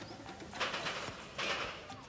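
Quiet outdoor street ambience with a bird calling, and two short bursts of noise about half a second and a second and a half in.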